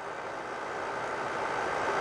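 Recirculating water chiller running, a steady whirring noise with a faint steady tone that grows slowly louder.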